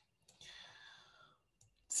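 A faint breath drawn in for about a second, then a couple of faint short clicks near the end.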